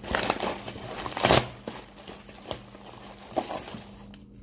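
Plastic air-cushion packing and a plastic zip bag crinkling and rustling as hands pull them apart, in uneven handfuls with a louder crackle about a second in.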